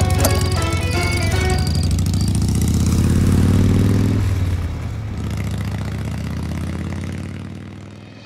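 Motorcycle engine running and being revved, its pitch rising and then dropping back about four seconds in to a lower steady run, under background music.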